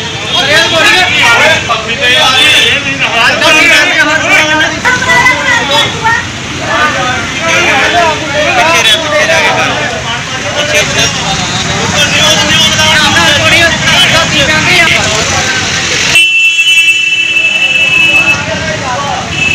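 Several men arguing and shouting over one another, with street traffic behind them. Near the end the voices drop away and a vehicle horn sounds in steady high tones.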